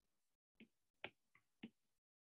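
Near silence broken by about four faint, short taps of a stylus on a tablet screen.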